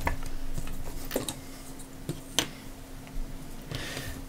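A few light clicks and knocks, about three over the few seconds, as a small circuit board is handled and freed from a metal bench vice, over a faint steady hum.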